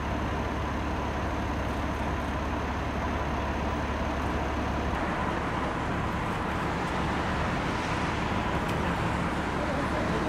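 Cars and SUVs moving slowly along a wet street, a steady mix of engine and tyre noise. A low engine hum stops about halfway through.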